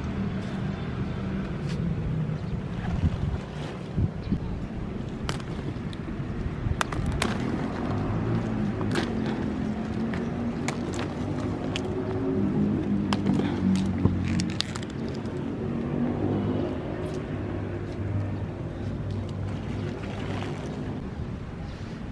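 A low, wavering motor hum runs in the background throughout. Over it come scattered clicks and rustles as cauliflower plants are handled and harvested by hand.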